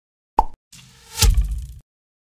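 Logo-animation sound effects: a short pop, then a building swell that lands on a sharp hit just over a second in and quickly fades out.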